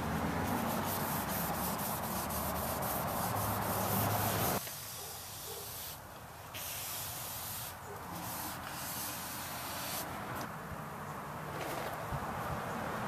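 A cloth rag rubbing back and forth over a painted body panel, wiping the sanded filler patch down with TSP cleaner. The rubbing is strongest for the first four and a half seconds, then drops off suddenly and carries on softer in short strokes with brief pauses.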